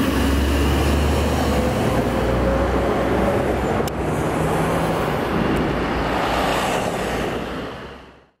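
Cummins ISM diesel engine of a New Flyer D40LFR transit bus pulling away through its Voith automatic transmission and receding down the street, with surrounding traffic noise. The sound fades out near the end.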